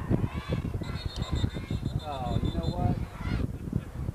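A referee's whistle blown in one steady, high-pitched blast of about two seconds, starting about a second in, signalling the play dead; spectators' voices call out over it.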